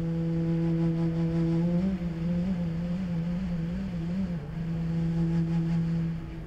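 Background score music: one long, low sustained note that wavers up and down in pitch for a couple of seconds in the middle, then settles again.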